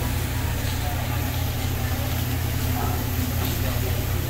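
Steady low hum of a hibachi griddle's exhaust hood fan, with faint room chatter.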